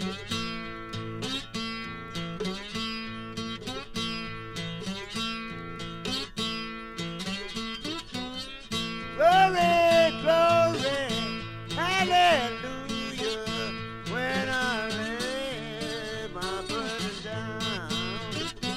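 Acoustic guitar playing the opening of a slow blues-gospel song. About nine seconds in a voice comes in singing, louder than the guitar, with long, bending notes.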